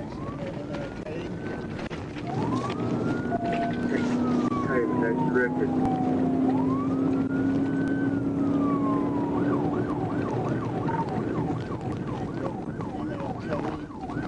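Police cruiser's siren heard from inside the car at speed. It runs a slow rising-and-falling wail for about the first nine seconds, then switches to a fast yelp, over the car's engine and road noise.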